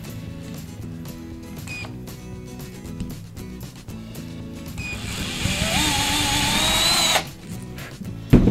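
Power drill boring a small pilot hole into a wooden plaque, over background music. About five seconds in, the drill runs for about two seconds with a whine that rises in pitch, then cuts off suddenly.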